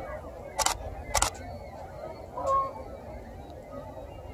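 A DSLR shutter firing twice, two sharp clicks about half a second apart, then a short faint honk from a Canada goose about two and a half seconds in.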